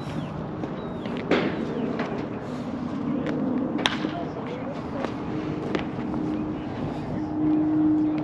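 Outdoor background of distant, indistinct voices, with a few sharp knocks spread through it and a steady low hum that gets louder near the end.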